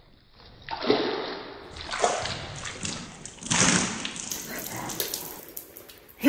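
Tea being spilled out of a glass, splashing, with three louder surges about a second or more apart.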